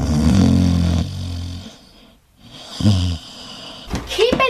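A person snoring: one long snore, then a shorter one near the end.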